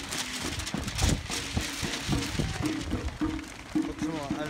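Footsteps of a crowd of marathon runners on asphalt: irregular taps of many feet, with music and held pitched notes in the background.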